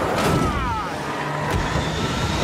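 A Jeep's engine running and revving as the vehicle is held back, with a falling pitched squeal about half a second in and a sharp knock about one and a half seconds in.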